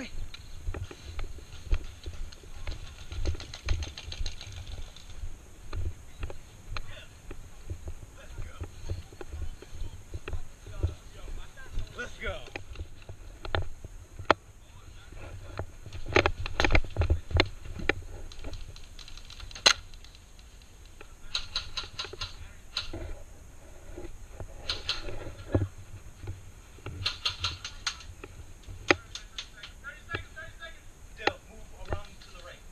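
Airsoft gameplay heard from a head-mounted camera: the player's movement and footsteps, with scattered sharp clicks and several short bursts of rapid clicking from airsoft guns firing, the densest bursts in the second half.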